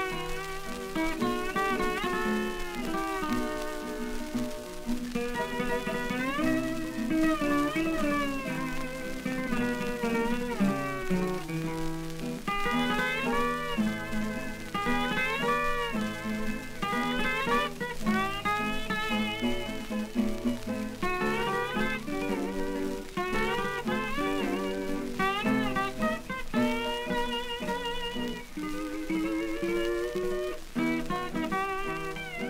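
Hawaiian steel guitars playing a slow melody with sliding, wavering notes, from a 1930 78 rpm record.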